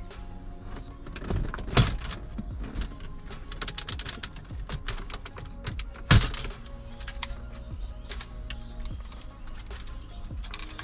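Background music with steady held notes, over short clicks and knocks of plastic dash trim being worked loose as the climate-control panel is pulled from a BMW X5's centre dash. Two sharp clicks stand out, about two seconds in and again about six seconds in.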